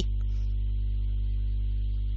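Steady low electrical hum, like mains hum in the recording, with no other sound.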